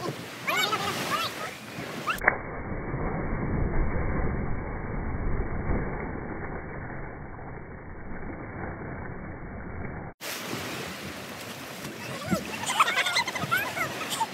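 People's voices calling out over the sea and wind, then, about two seconds in, a sharp knock followed by a long muffled stretch of low rumbling water noise. Near the end, high excited voices again over the waves.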